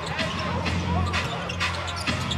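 A basketball dribbled on a hardwood court, several bounces about half a second apart, over a steady low arena hum.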